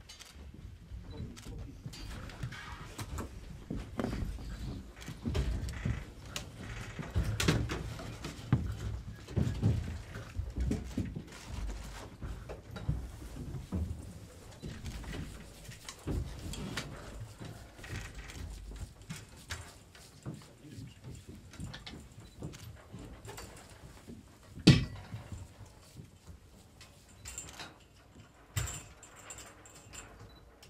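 Irregular rustling, shuffling and handling noise from several people working close together in a small studio, with one sharp knock about three-quarters of the way through and a few lighter clicks near the end.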